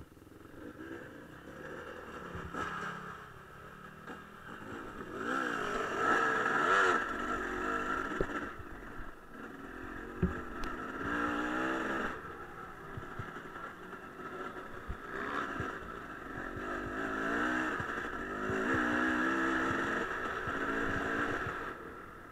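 Enduro dirt-bike engine revving up and down in repeated surges of throttle as it rides over rough, rocky ground, with a few sharp knocks from the terrain.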